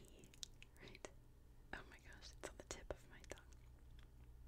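Very quiet: faint, scattered small clicks close to the microphone, about a dozen over a few seconds, over a low steady hum.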